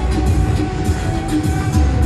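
Loud dance music played through a PA system, with heavy bass and a steady beat.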